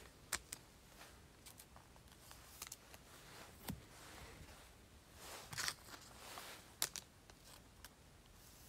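Faint handling noise of baseball cards being slipped into plastic sleeves: soft rustling with a few short, sharp clicks.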